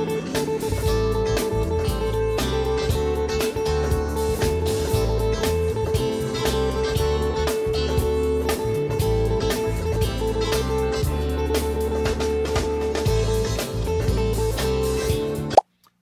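Electric guitar hammering a single note, A, picked over and over in quick, busy flurries with no unifying rhythm, over a backing track with bass. It is a deliberate example of overplaying a one-note solo. The playing cuts off suddenly near the end.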